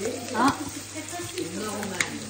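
Scallops frying in butter in a hot frying pan, sizzling steadily.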